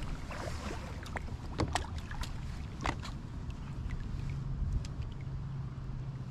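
Irregular sharp clicks and knocks from a spinning rod and reel being handled in a plastic kayak, mostly in the first half, over a steady low rumble. A steady low hum comes in about four seconds in.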